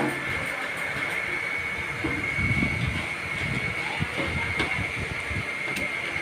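Steady hum of workshop machinery with a constant high whine, and a few light metallic clicks and knocks as a steel mould block is handled on a metal bench.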